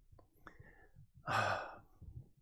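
A man's audible sigh, a single breathy exhale of about half a second past the middle, preceded by a couple of faint clicks.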